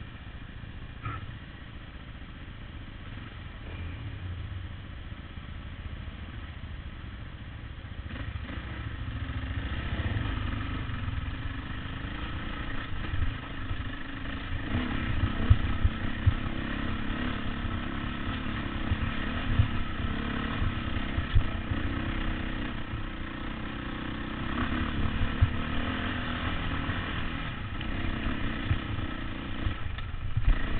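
Dirt bike engine running as it rides a rough trail, growing louder about eight seconds in, with frequent short knocks and clatter from the bike jolting over the ground.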